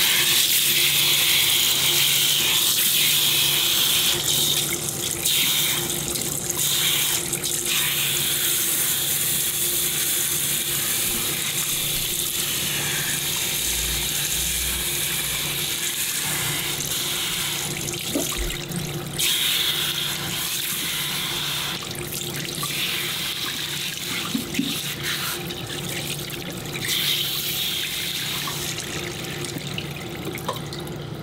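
Water spraying steadily from a handheld shampoo-basin sprayer onto a head of hair and splashing into a ceramic sink as the shampoo is rinsed out.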